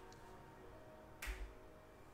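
A single short, sharp click a little after a second in, over faint background music.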